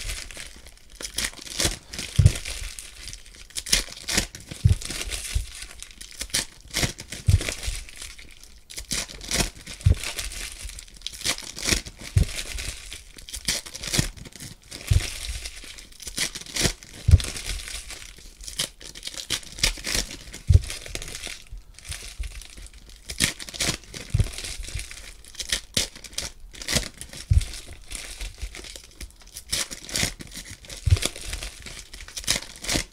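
Foil trading-card pack wrappers crinkling and tearing as packs are ripped open and handled, with a soft low thump every two to three seconds.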